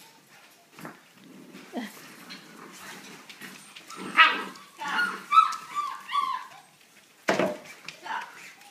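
A litter of puppies yipping and whining in short high-pitched calls, mostly in a burst in the middle of the stretch, with a sharp knock near the end.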